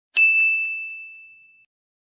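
A single bright bell ding, struck once just after the start and ringing out on one clear high tone that fades over about a second and a half.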